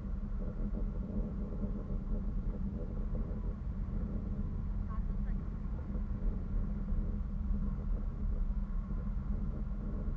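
Wind rushing over a small camera microphone high in the air, a steady low rumble.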